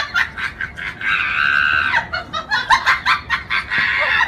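Rapid, high-pitched laughter, broken by a held shriek about a second long shortly after the start.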